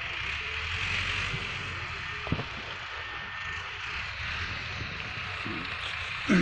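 Farm tractor engine running steadily, a low hum under an even hiss, with one sharp click a little past two seconds in.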